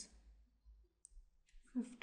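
A near-silent pause over a faint low hum, with a single short, soft click about a second in and a brief breathy noise just before the voice resumes near the end.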